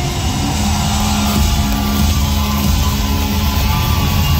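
Punk rock band playing live at full volume, heard from the audience in a large hall: a steady, dense wash of band sound with no singing.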